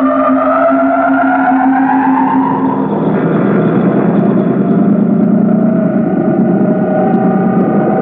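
Electronic science-fiction film sound, the machine hum of a vast alien power plant made from oscillator tones. Several tones glide upward over a steady low hum, then about three seconds in they give way to a dense, pulsing drone of steady tones.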